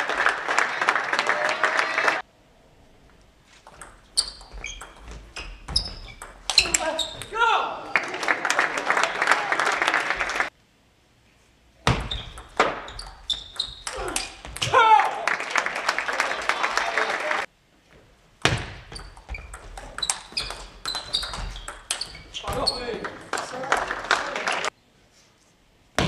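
Table tennis rallies: the ball clicking sharply back and forth off rackets and table, each point ending in a couple of seconds of spectator applause. The sound drops to dead silence abruptly between points, three times.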